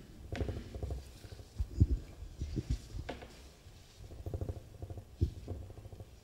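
Handling noise on a table microphone: irregular soft low thumps and knocks with some rumble, as things are moved about on and near the desk.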